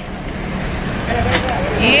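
Steady street traffic rumble, with a voice talking briefly in the background in the second half.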